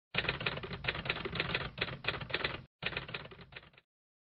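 Typewriter sound effect: rapid keystrokes clattering, with a short break a little under three seconds in, then thinning out and stopping just before the end.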